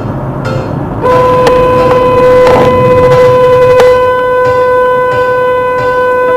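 Car horn held in one long, steady blast of a single pitch, starting about a second in and kept on without a break, over road noise inside the car.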